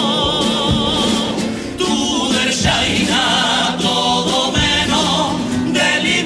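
A Cádiz carnival comparsa's male chorus singing in several-part harmony, the upper voices with a wide vibrato, over a rhythmic accompaniment; short breaths between phrases about two seconds in and again near the end.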